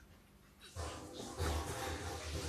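A person breathing hard and strained through push-ups, starting under a second in and going on loudly.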